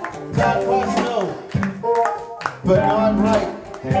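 Live band playing a groove: electric bass and drums under bending melodic lines, with sharp drum hits throughout and a brief dip in the music about two and a half seconds in.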